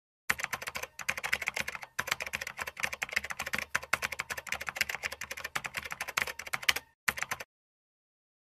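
Fast keyboard-typing sound effect: a dense clatter of key clicks in runs with brief breaks, stopping shortly before the end.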